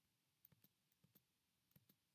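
Near silence with a few faint, scattered clicks of computer keyboard keys.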